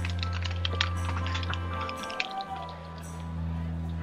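Live rock band music from a concert recording: a held bass note under steady chords and quick cymbal and drum hits, with the bass dropping out briefly about halfway through.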